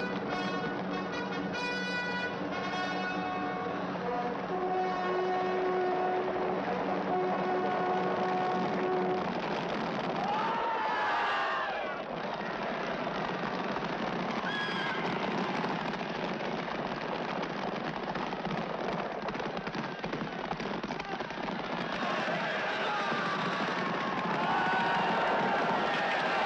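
Film soundtrack: a brass fanfare for about the first nine seconds, then the din of a cavalry charge, with galloping horses and a horse whinnying about eleven seconds in. Near the end, men shout.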